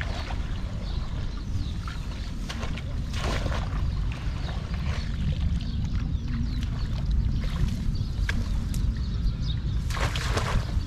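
Shallow muddy water splashing and sloshing as hands and a woven bamboo basket are worked through it, with a larger splash about three seconds in and smaller ones later. Wind buffets the microphone throughout as a steady low rumble.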